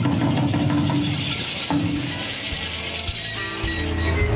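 Music playing, with a new passage of held notes coming in near the end.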